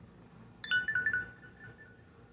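A short electronic chime, like a phone notification tone: a quick run of four or five high notes starting a little over half a second in and ringing out for about a second.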